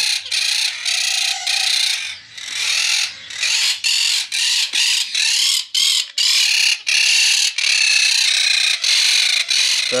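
A flock of parakeets calling loudly and continuously, in shrill, closely repeated screeches.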